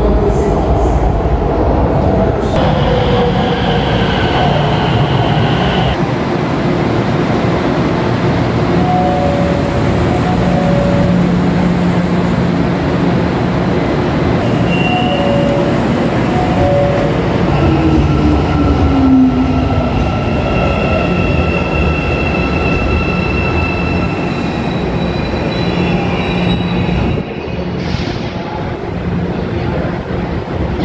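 Metro train at the station platform, its motors and running gear making a steady loud noise with held whining tones. A tone slides downward a little past the middle, and short electronic beeps sound twice.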